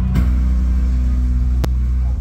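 Loud, low sustained drone of a live band's amplified bass through a venue PA, distorted by a phone microphone, with a single sharp click about a second and a half in.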